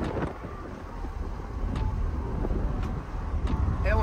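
Lamborghini driving at road speed, heard from inside the cabin: a steady low engine and tyre rumble with some wind noise.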